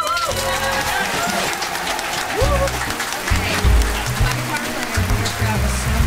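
A live band's song ending, its low notes still sounding under applause and cheering in the studio.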